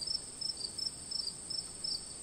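Insect chorus: a steady high trill with shorter chirps repeating about three times a second.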